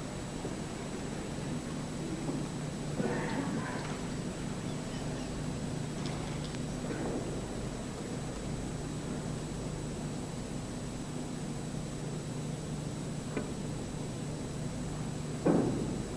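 Quiet snooker hall heard through an old television recording, with a steady low hum and hiss. A few faint clicks of snooker balls are heard, and a louder short knock comes near the end.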